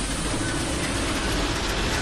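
Film sound effects of heavy construction-crane machinery: a steady, dense mechanical rattling and rumble of metal parts in motion.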